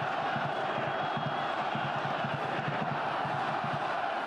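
Stadium crowd noise: a steady din of many voices from the stands, with no single voice standing out.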